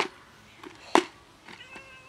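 Sharp plastic clicks from a snap-lock food container's lid being unclipped, the loudest about a second in, then a kitten meows once near the end in one steady call.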